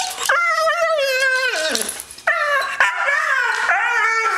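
Australian Kelpie howling and whining in excitement at the prompt of a walk. It makes two long wavering calls; the first slides steeply down in pitch about two seconds in.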